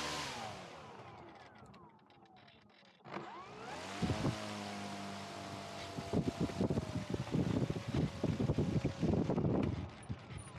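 Small RC plane's electric motor and propeller winding down, then about three seconds in spinning up again in reverse thrust to a steady whine. From about six seconds in, a rough crackling noise joins it as the plane backs up on the pavement.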